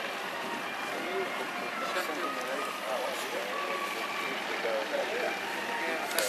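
Avro Lancaster bomber's four Rolls-Royce Merlin V12 engines running steadily as the aircraft taxis along the runway, with people's voices over it.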